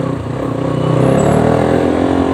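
Sport motorcycle engine pulling as the bike accelerates, its note rising in pitch over about a second and then holding steady.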